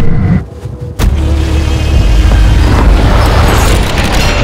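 A sudden deep boom about a second in, followed by a loud, steady rush with a heavy low rumble, like wind and water streaming past a fast-moving boat.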